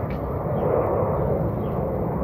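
An airplane flying overhead: a steady, even drone.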